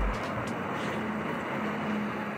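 Steady city road traffic noise as vehicles, a taxi and a bus among them, pass close by.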